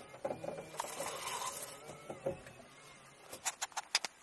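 Built-in multi-disc CD changer of a Renault Espace IV's Cabasse head unit running as it swaps discs: a faint mechanical whir and soft clicks, then a quick run of sharp clicks near the end.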